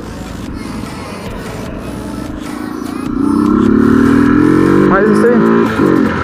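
Honda CG Fan 125's single-cylinder four-stroke engine under way, then pulling harder from about three seconds in with its pitch climbing steadily as it accelerates, before the note drops away near the end.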